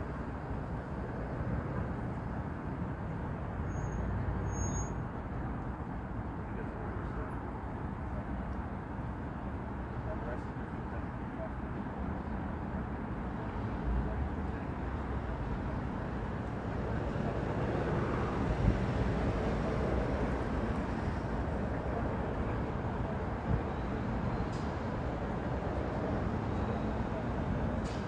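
Steady low rumble of vehicle engines and traffic, with faint low voices underneath.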